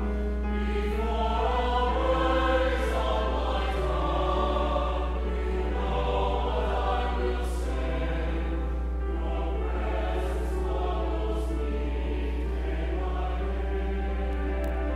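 Mixed church choir of men's and women's voices singing, sustained sung notes with sung words audible, over a steady low hum.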